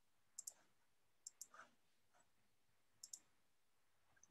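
Faint computer mouse clicks: three quick double clicks spread over a few seconds, otherwise near silence.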